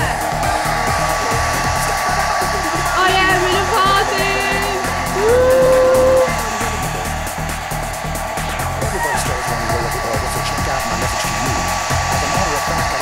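Hand-held hair dryer blowing steadily, with a constant high whine over the rush of air, and dance music with a steady beat underneath.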